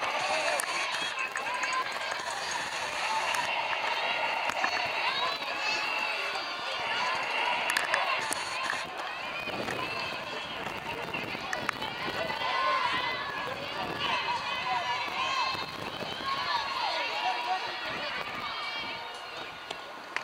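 Many overlapping voices chattering and calling out at once around a softball field, with no single voice standing out.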